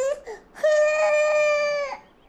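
Baby crying: one wail breaks off just after the start, then a longer, steady wail lasts about a second and a half.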